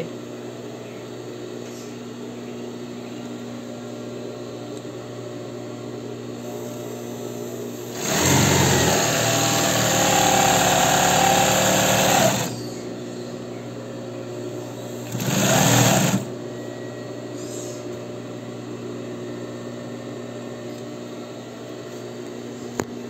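Morita Special 547 zigzag sewing machine stitching a test seam through denim after being threaded: one run of about four seconds, then a short burst of about a second, with a steady hum in between.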